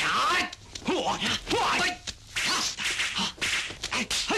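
Kung fu fight sound effects: a rapid run of whooshing swipes and sharp whacks of blows, about two a second, mixed with the fighters' short shouts and grunts.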